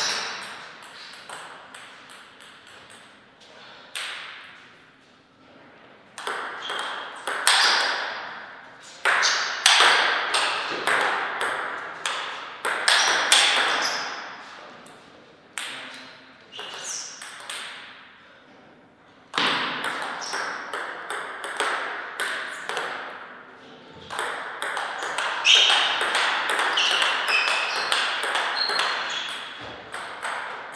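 Table tennis ball clicking back and forth between bats and table in several short rallies, each a quick train of sharp ticks, with quieter pauses between points.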